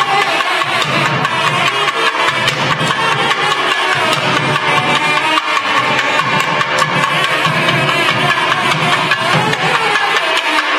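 Nadaswaram and thavil ensemble playing: a loud, continuous reed melody over dense, quick thavil drum strokes.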